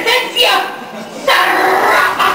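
A performer's loud voice in short shouted bursts, heard over a live stage sound.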